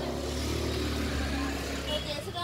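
Low rumble of a motor vehicle engine, steady and then fading near the end, under faint voices.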